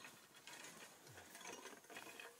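Faint, irregular clicks and scrapes from someone moving through a dirt-floored crawlspace while handling a camera.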